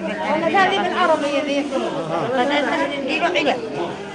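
Speech only: a woman talking into a handheld microphone, her words not made out, with overlapping chatter.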